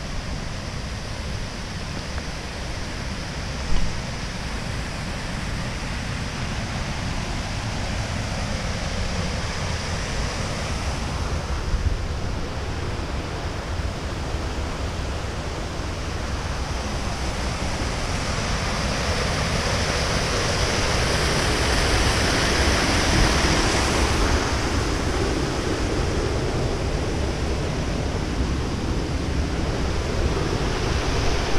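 Steady rush of sea surf and wind, with wind rumbling on the microphone; the rush swells slowly and is loudest about two-thirds of the way through. A short knock sounds about four seconds in.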